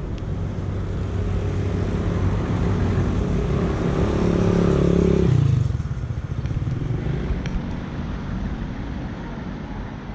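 A motor vehicle driving past on the road, its engine growing louder to a peak about five seconds in, then dropping away, leaving a steady street hum.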